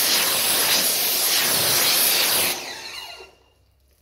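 High-pressure water jet spraying onto a car's painted bonnet, rinsing off a sprayed-on hydrophobic coating: a loud steady hiss of spray that tails off about two and a half seconds in and stops a second later.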